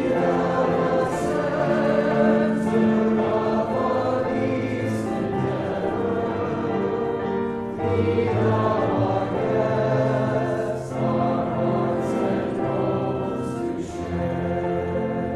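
A group of voices singing a hymn together in long held notes.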